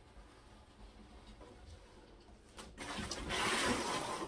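Cardboard box being slid across a hard floor: a rough scraping rustle that starts about three seconds in and lasts just over a second, after faint room noise.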